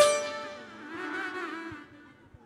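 Instrumental music from a Bangladeshi folk ensemble. A sharp struck note at the start is followed by a short pitched phrase that fades away to near quiet by the end.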